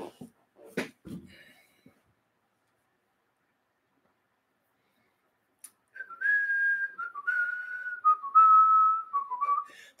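A man whistling a short run of notes in the second half, each note held briefly and stepping down in pitch. A few faint clicks come in the first second or so, with near silence between.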